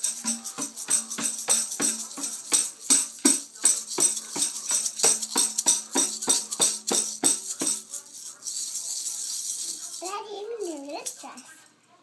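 Toy tambourine shaken and struck in a steady rhythm, about three jingles a second, stopping about eight seconds in. Near the end a child's voice sings a short gliding phrase.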